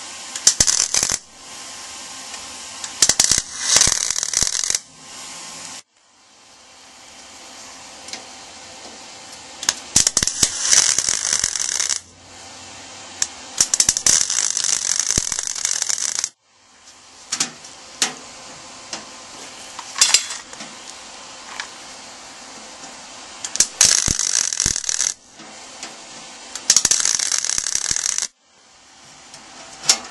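Wire-feed welder tack-welding sheet steel: short bursts of crackling, sputtering arc, each a second or two long, with sharp pops and quieter gaps between the tacks.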